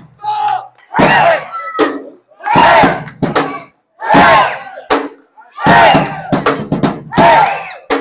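A Viking folk band and dancers chanting loud rhythmic battle-cry shouts in unison, about one shout a second with short gaps between, a drum beat landing with several of the shouts.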